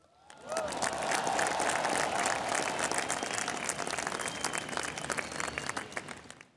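Large audience applauding after the announcement of Jio, building up over the first second, holding steady, then dying away near the end.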